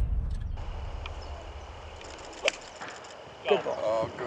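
A single sharp strike about two and a half seconds in: a golf club hitting through the sand on a bunker shot. A low rumble fades away in the first two seconds, and a man's voice starts near the end.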